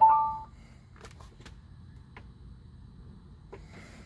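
A short electronic chime: two steady tones that sound together and fade within about half a second. It is followed by a few faint, scattered clicks over a low steady hum.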